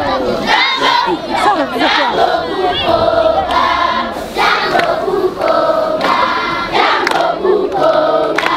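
A large group of schoolchildren singing together in chorus, in phrases of held notes.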